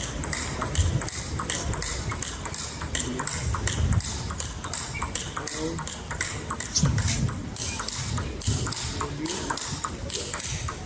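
Table tennis ball struck back and forth between two players' rubber-faced rackets and bouncing on the table in a fast practice rally: a quick, even run of sharp clicks, several a second.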